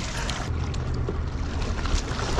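Wind rumbling on an action camera's microphone over lake water, with the splash of a kayak paddle and a kayak moving in the water.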